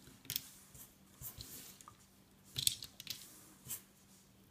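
Rubber loom bands being stretched and laid across the plastic pegs of a Rainbow Loom: a few light clicks and short rustles, the loudest a little past halfway.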